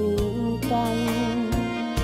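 A woman sings a Lao pop song over a backing track of steady bass notes and drum hits, holding and bending a long sung note.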